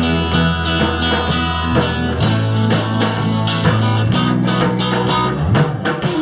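Live rock band playing an instrumental passage between sung lines: electric guitars over a bass guitar and a drum kit keeping a steady beat. The bass moves to a new note about two seconds in and slides near the end.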